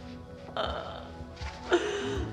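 Sombre film score with held notes, under two short choked sobs, about half a second in and near the end.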